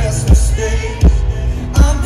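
Live band music with a heavy kick drum beating steadily about every three-quarters of a second under a melody.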